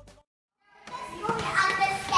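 Background music ending, a brief dead silence, then children's voices chattering from about a second in.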